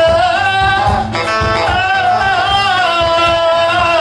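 Live band music, loud: a singer holds long, gliding notes over a steady drum beat.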